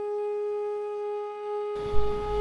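Background music: one long held note in a flute-like wind tone, steady in pitch. Near the end a low hum and hiss come in under it.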